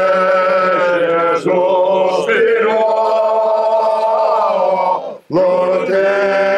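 Small group of men singing a sacred chant a cappella in several parts, in the Corsican polyphonic manner: long held notes over a low sustained voice. The singing breaks off briefly about a second and a half in and again near the end, with a breath before each new phrase.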